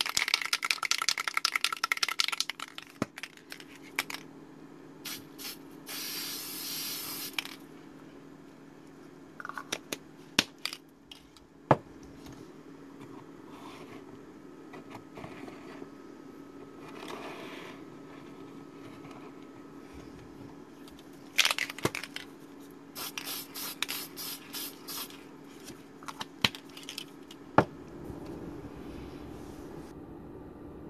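An aerosol can of Testors Dullcote clear matte lacquer being shaken, its mixing ball rattling rapidly, then sprayed: one long hiss about six seconds in and a run of short hisses a little past twenty seconds. Between the sprays come scattered clicks and knocks from handling the model and its wooden supports.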